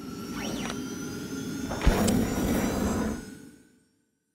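Electronic logo sting: a rushing swoosh with sweeping pitches, then a sharp hit about two seconds in, fading out just before the end.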